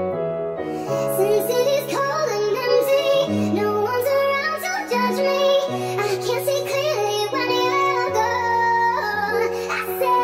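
Nightcore edit of a synth-pop song: a sped-up, high-pitched female vocal sings over synth chords and long held bass notes.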